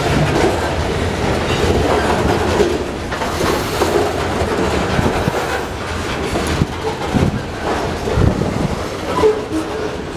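Covered hopper cars of a Union Pacific freight train rolling past close by: a steady rumble of steel wheels on rail, with clacks and sharp knocks from the wheels, most of them in the second half.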